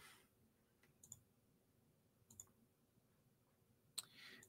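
Near silence: room tone broken by a few faint, short clicks, one about a second in, another past two seconds and one at the very end.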